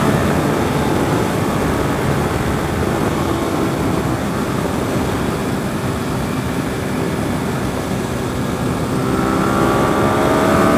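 Suzuki SV650S V-twin engine running at road speed, largely buried in wind rush on the microphone. About nine seconds in, its note climbs as the bike accelerates.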